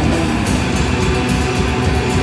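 Live hardcore punk band playing at full volume, with distorted electric guitar, bass and drums. From about half a second in, cymbals are struck in quick, even strokes.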